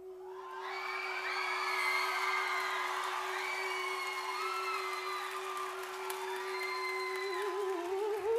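A singer holds one long, steady note while the theatre audience whoops and cheers over it. About seven seconds in, the note breaks into a wavering vocal run.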